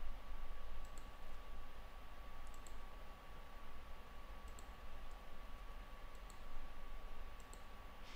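Computer mouse clicking: a scattering of faint, short clicks, some in quick pairs, over a faint steady hum.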